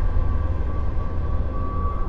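A steady low rumble with a thin held tone above it: an ambient drone of film sound design.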